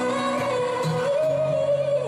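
A female singer in a live pop performance holding one long sustained note that steps up slightly in pitch about a second in, over guitar and keyboard accompaniment.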